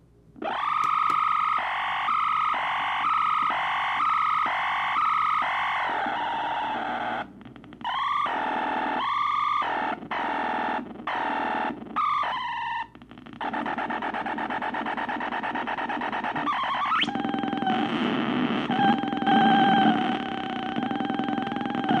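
Homemade feedback oscillator built from logic gates, making a pitched electronic tone that wobbles up and down in a regular pulse a little faster than once a second. It then cuts out and back in several times, and turns into a noisier, buzzing drone with a quick rising sweep, followed by a wavering steady tone.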